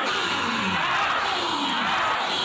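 Many voices at once: a congregation shouting and praying aloud together, with no clear words, at a steady loud level.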